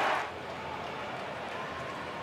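Low, steady open-air ground ambience from the broadcast's field microphones, with no crowd noise because the stands are empty.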